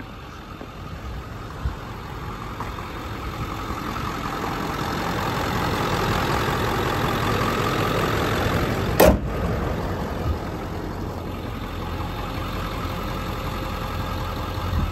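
6.4-litre Power Stroke V8 turbo-diesel idling steadily, growing louder toward the middle as the open engine bay is approached and easing off again. A single sharp click about nine seconds in.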